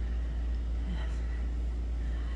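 A steady low rumble, with a brief faint sound just before a second in.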